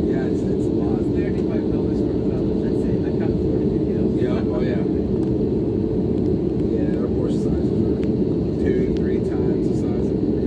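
Steady low cabin rumble of an Airbus A320-family airliner taxiing on the ground, its engines at low power, with faint murmur of passengers' voices in the cabin.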